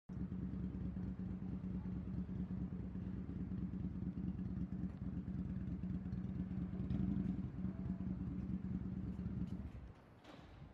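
Steady low engine drone and rumble of road traffic, with one constant low hum throughout; it cuts off suddenly near the end.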